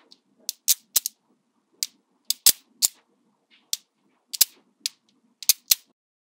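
Small magnetic balls clicking sharply as they snap onto a hand-built cylinder of magnetic balls, about fifteen irregular clicks, some in quick pairs.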